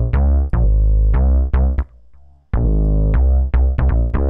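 Softube Monoment Bass software synth playing a repeating bass line of short notes with sharp attacks and a deep low end. It cuts out for about half a second near the middle as the Source A sawtooth patch is switched, then carries on with the new patch.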